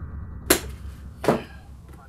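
A single sharp tap about half a second in, then a short spoken 'yeah'.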